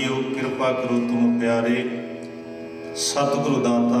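Sikh kirtan: a voice singing a devotional line over a steady harmonium, the singing swelling again about three seconds in.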